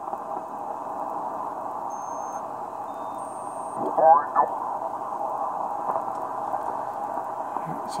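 Shortwave receiver tuned in lower sideband on the 40-metre amateur band, giving a steady band hiss through its narrow audio passband. About four seconds in, as the dial sweeps past a station, a brief snatch of single-sideband voice slides up in pitch.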